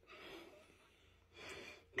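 Two faint breaths, each about half a second long: one at the start and one about a second and a half in, with near silence between.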